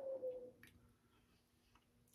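A man's long breath out through pursed lips against the sting of freshly applied aftershave, its faint falling tone trailing away within the first half second. Then near silence with a couple of faint clicks.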